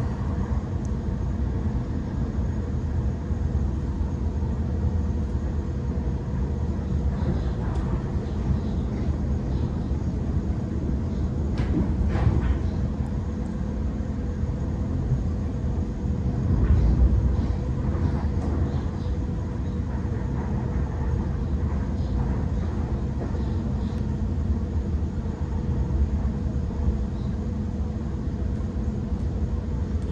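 Interior running noise of a Sydney Trains Waratah (A set) double-deck electric train travelling at speed: a steady low rumble with a faint constant tone, swelling louder twice, about 12 and 17 seconds in.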